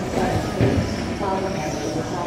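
1/12-scale on-road RC pan cars with 13.5-turn brushless electric motors racing around a carpet track, their motors whining over a steady hall rumble. A louder low thump comes about half a second in.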